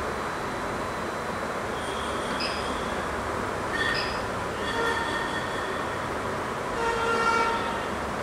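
3D printer running with a steady fan hiss. Its stepper motors give several short pitched whines as the print head is moved, the longest and loudest near the end.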